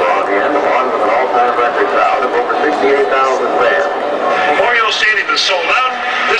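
A man's voice narrating over a stadium public-address system, as part of a tribute video played on the video board.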